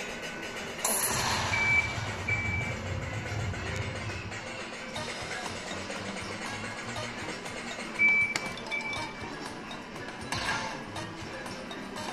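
Slot machine electronic music and sound effects during a free-spin bonus on an Aristocrat Lightning Link High Stakes machine, as the reels spin and land. A loud burst comes about a second in, and a pair of short high beeps is heard twice, near the start and again later.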